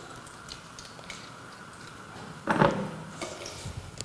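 Dried chiles de árbol frying in hot lard in an enamel pot: a faint, steady sizzle with a few light crackles, and one brief louder sound about two and a half seconds in.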